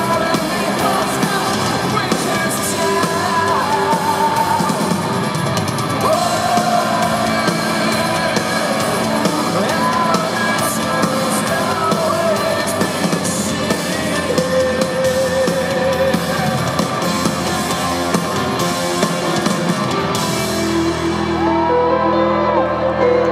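Live rock band playing loudly: a man singing lead over electric guitar and drums, recorded from the audience in an arena.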